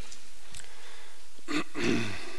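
A pause in speech: steady background hiss, with one short burst of noise about one and a half seconds in.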